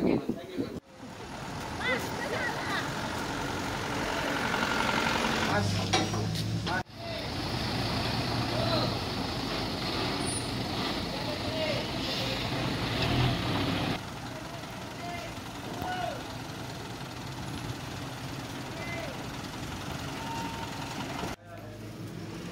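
A container truck's diesel engine running with a steady low hum, under people talking. The engine is loudest through the middle and drops off suddenly about two-thirds of the way in.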